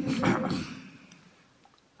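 Several people laughing, the laughter dying away within about a second and a half.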